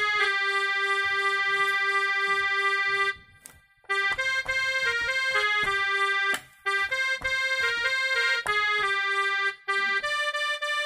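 Casio SA-5 mini keyboard playing a single-note melody: one long held note for about three seconds, a short pause, then a run of shorter notes with another brief break a little after six seconds.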